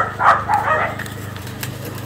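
Dogs barking, several quick barks in the first second, then a steady low hum.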